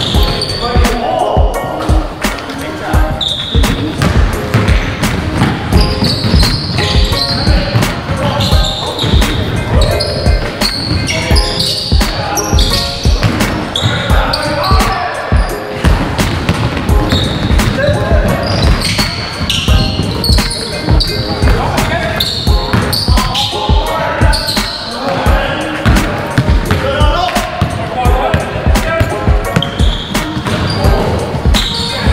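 Basketballs bouncing and sneakers squeaking on a hardwood gym floor during a game, a steady run of thumps with short high squeaks throughout, and players' voices calling out.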